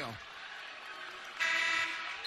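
A basketball arena's horn sounds one short, steady blast of about half a second near the end, louder than the crowd murmur underneath.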